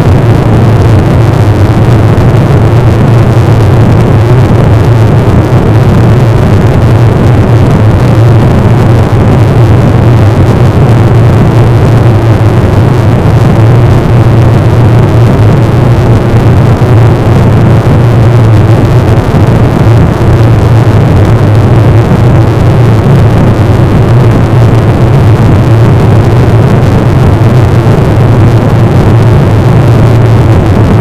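A loud, unchanging wall of dense noise with a strong low hum, holding steady with no breaks or changes in pitch.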